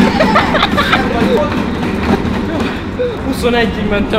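Excited voices shouting and cheering, over a steady low rumble from a curved non-motorised treadmill being sprinted on.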